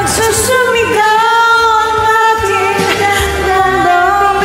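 A woman singing a Filipino love ballad in a karaoke duet over a recorded backing track, holding long notes that bend in pitch.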